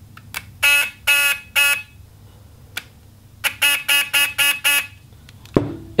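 Electric fuel pump, out of its tank and wired straight to a battery, buzzing in short bursts as its leads are tapped on the terminals: three bursts about a second in, then a quicker run of four or five near the middle, with small clicks between. After cleaning its connectors and letting it dry out, the pump runs again.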